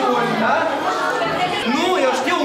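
Many voices chattering at once in a large hall, children and adults talking over one another with no single clear speaker.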